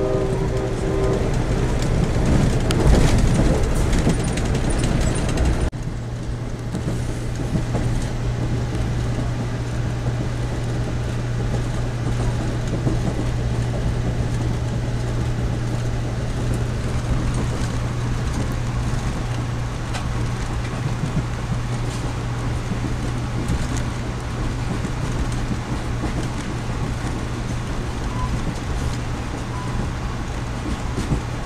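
Inside an Amtrak passenger coach running at speed: steady rumble of wheels on rail under a constant low hum. Louder, with some sharp clatters, for the first few seconds, then the level drops suddenly about six seconds in and stays even.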